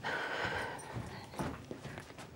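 A breathy hiss like a forceful exhale, lasting under a second, then a light thud about a second and a half in, likely a footstep on the wooden stage.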